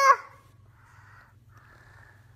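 The end of a young boy's long, high-pitched, upset shout of 'No!', which cuts off just after the start; then faint breaths.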